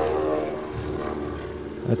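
Beechcraft Model 18 (Twin Beech) with its two radial engines droning steadily in flight during an aerobatic smoke pass, an even multi-tone hum that sounds good. The hum eases slightly toward the end.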